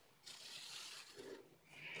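Faint scratchy rubbing of a felt-tip marker drawn across corrugated cardboard: one stroke of under a second, then a brief fainter rub.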